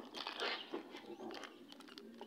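Faint rustling and a few light clicks as a pedestal fan's plastic motor cover and wires are handled.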